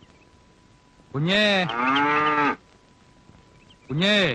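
A cow mooing: a long moo about a second in, with a brief break partway through, then a second, shorter moo at the end.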